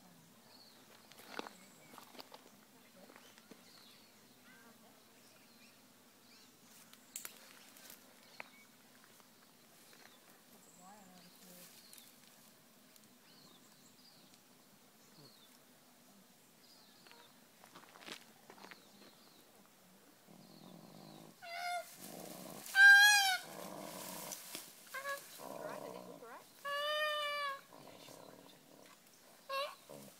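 Faint rustling and clicks in the scrub, then, about two-thirds of the way in, a female koala crying out in distress as she is caught and held: a few loud, wavering squeals, the loudest early in the run, with low grunting between them.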